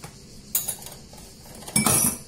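Kitchen utensils being handled: a stainless steel mesh sieve being settled on a plastic mixing bowl, with a sharp click about half a second in and a louder short clink near the end.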